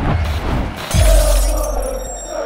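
Sound effects of an animated logo intro over music: a hit at the start and a louder one about a second in, with a deep bass boom and a shattering effect.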